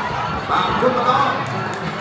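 Ringside fight music with a wavering melody over drum beats, mixed with voices in the arena crowd.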